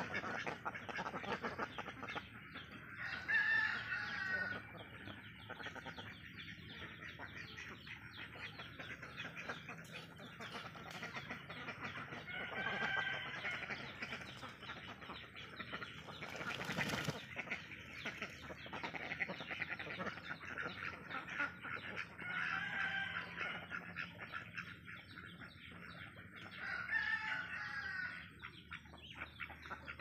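Roosters crowing now and then: a pitched call of a second or so every several seconds, over a steady high background din. One sharp knock comes a little past the middle.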